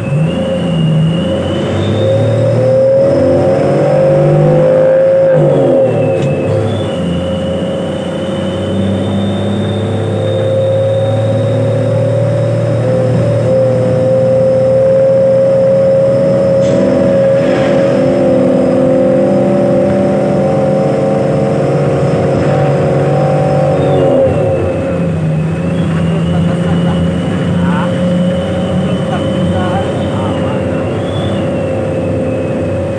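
A bus's diesel engine running under way, heard from inside the passenger cabin, loud and steady, with a thin high whine above it. Its pitch slides noticeably at about five to six seconds and again at about twenty-four seconds.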